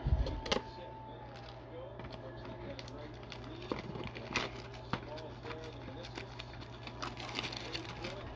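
Scissors snipping through the plastic shrink wrap on a trading-card blaster box, then the wrap being peeled off with scattered soft crinkles and clicks. Faint voices and a low steady hum sit underneath.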